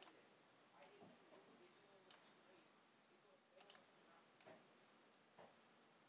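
Near silence: faint room tone with about five soft, scattered clicks of a computer mouse.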